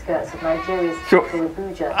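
Speech: an elderly man talking slowly, with pauses between words.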